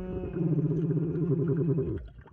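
Underwater metal detector giving a steady, buzzing target tone for about a second and a half, signalling metal in the lake-bottom gravel.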